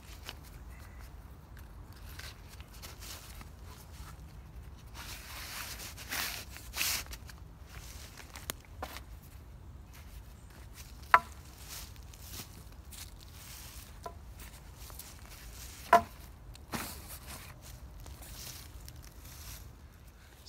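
Rustling and footsteps in dry leaf litter as a canvas chair seat and a wooden pole are handled and the pole is fed through the seat's bottom loop. There are two sharp knocks, one about eleven seconds in and one about sixteen, over a low steady rumble.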